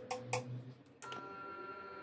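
A few sharp clicks and knocks, then from about a second in a steady electric hum with a high whine: a bench grinder's motor running.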